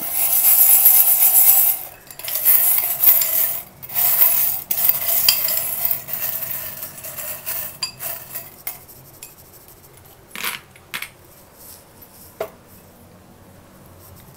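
A glass bowl of small metal charms jangling and clinking as a hand stirs and shakes them, loud in three bursts over the first half, then thinning to a few separate clinks.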